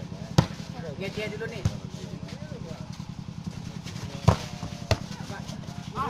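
Volleyball being struck by hands during a rally: four sharp slaps, about half a second in, just before two seconds, and a quick pair around four and a half seconds. Faint shouting of players in the first two seconds, over a steady low drone.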